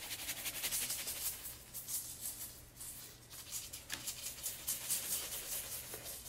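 Salt shaken from a cylindrical salt canister, the grains rattling and pattering out in a quick, continuous run of shakes over glue-covered paper.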